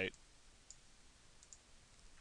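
Two faint computer mouse clicks about a second apart, over a low steady hiss.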